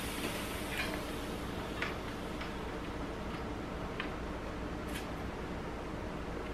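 Faint steady hiss with a few soft ticks: air leaking from a bicycle inner tube that has been pinched and holed while the tyre was being fitted.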